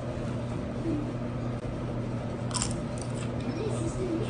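A tortilla chip topped with chopped pickle relish crunching as it is bitten, with one sharp crunch about two and a half seconds in and a few fainter chewing crunches after. A steady low hum runs underneath.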